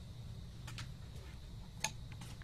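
Small metal hand tools clicking against a hard drive's metal cover: a few faint ticks, then one sharp click near the end, over a steady low hum.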